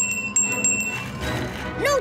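Brass desk service bell rung with several quick dings over about a second, its high ring fading after the last strike.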